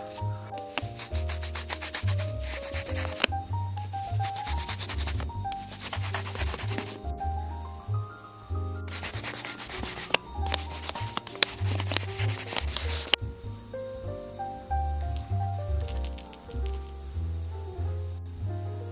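Pencil scribbling on paper in several bursts of rapid back-and-forth strokes, each a second or more long with short pauses between, over background music.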